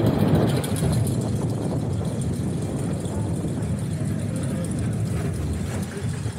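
Interpark Cyclon steel roller coaster train rolling on its track with a steady low rumble, slowly easing off as the train slows into the station at the end of the ride.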